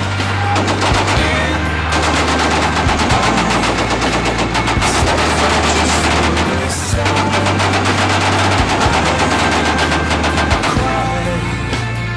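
Machine-gun fire in long rapid bursts with short breaks, mixed with music that has a heavy, sustained bass line.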